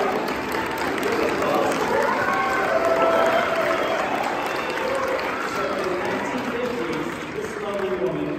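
Audience applauding, with voices from the crowd mixed in, dying down at the end.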